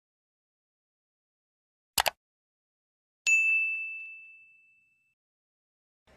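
Intro sound effect: a quick double click, then a single bright, high-pitched ding that rings out and fades over about a second and a half.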